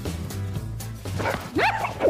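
Background music with a steady low beat. From about a second in come high excited squeals and whoops, short voiced yelps that sweep up and down in pitch.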